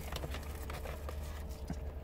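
Paper burger wrapper crinkling and rustling with scattered soft crackles and taps as a burger is unwrapped, over a steady low hum.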